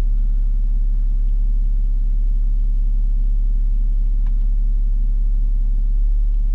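Steady low drone of the BMW 730d's 3.0-litre straight-six diesel idling, heard inside the cabin, with one faint click about four seconds in from the iDrive controller being worked.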